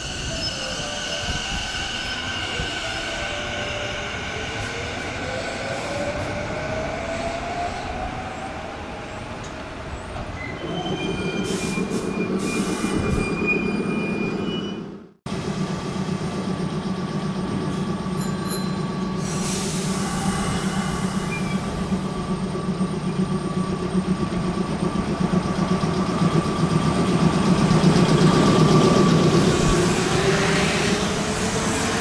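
Electric commuter trains at a station platform. First comes a train's motor whine rising in pitch as it accelerates. Then a Sanyo 3000 series train stands with a steady low hum and begins to pull out near the end, its motor tone rising and growing louder.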